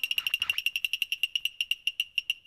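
Title-sting sound effect: a rapid train of short, high-pitched beeps all on one pitch, about ten a second at first and gradually slowing.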